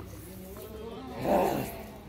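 Men's voices, mostly faint, with one short, louder voice-like sound about a second and a half in.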